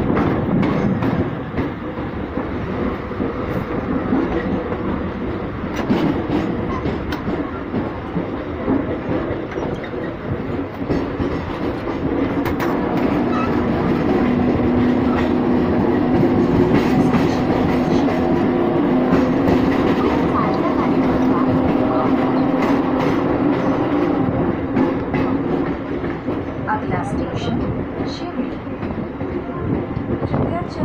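Mumbai suburban local train running, heard from its doorway: a continuous rumble of wheels on the rails with scattered clacks over the joints. A steady low hum swells for about ten seconds in the middle.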